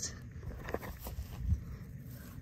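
A few faint scrapes and knocks as a clamping sprinkler riser extractor is twisted inside the fitting to unscrew the broken riser piece.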